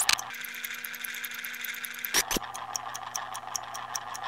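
Designed sound effect for an animated title card: a low steady hum with fast, even ticking over it, broken by a single sharp hit about two seconds in.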